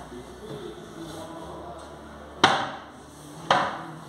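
Two sharp knocks on wooden furniture about a second apart, after a moment of low handling noise.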